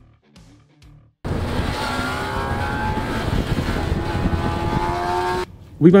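A sports-bike engine accelerating hard. Its pitch climbs steadily through the gear. It starts suddenly about a second in and cuts off abruptly near the end.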